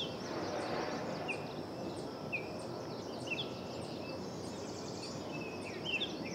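Outdoor garden ambience: a steady background hiss with a bird repeating a short, falling chirp about once a second, and faint high ticks alongside.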